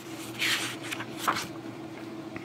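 Paper pages of a thin softcover booklet being turned by hand: two brief rustles, over a faint steady hum.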